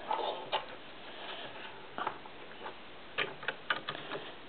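Faint clicks and knocks of plastic Lego pieces as a built Lego model is handled: a few single clicks, then a quick run of about four near the end.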